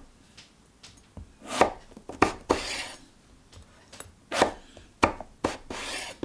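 Chef's knife cutting an aubergine into wedges on a wooden chopping board: about six knocks of the blade on the board at uneven intervals, two followed by a short scraping rasp.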